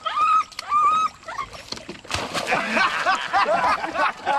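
Small dog yipping in short, high-pitched calls about twice a second. About halfway through, a louder jumble of overlapping sounds takes over.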